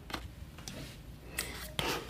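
Cardboard mailer box being pried open by hand: quiet rubbing and scraping of the cardboard lid and tuck flap, with a small click just after the start and a short scrape about one and a half seconds in.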